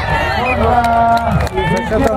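A man's voice calling out, announcer-style, with one long drawn-out call about half a second in.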